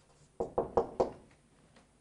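Marker pen writing on a whiteboard: four quick knocks of the tip against the board, starting about half a second in.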